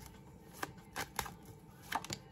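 Tarot cards being handled and pulled from a deck: about five short, sharp clicks and snaps of card stock and long fingernails in two seconds.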